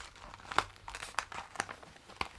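A magazine's gift packaging crinkling as it is handled and checked, in a handful of short, sharp crackles.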